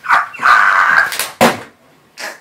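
A man laughing hysterically: a long, high-pitched cry of laughter followed by a couple of short gasping bursts.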